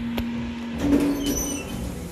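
Lift running with a steady hum that gives way, just under a second in, to a brief higher tone and a louder clunk as the car comes to a stop at the floor. The doors start to slide open near the end.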